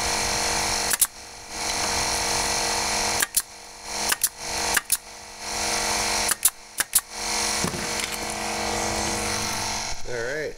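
Pneumatic nailer firing nails into pallet boards: about eight sharp shots, one about a second in and the rest clustered between about three and seven seconds in. A steady machine hum runs underneath.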